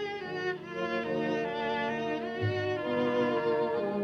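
Background film score: a slow melody of held bowed-string notes, with a lower note coming in about halfway through.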